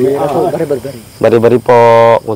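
A person's voice, speaking or calling out in the dark, ending in one long held vowel.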